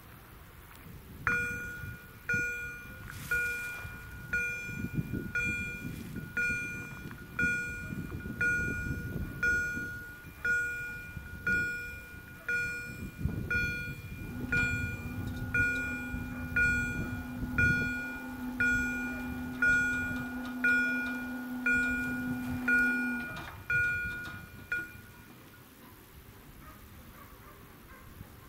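Level crossing warning bell ringing at about one strike a second, sounding the approach of a train. From about halfway through, the barrier drive motor hums steadily while the booms lower; the hum stops a little before the bell falls silent near the end.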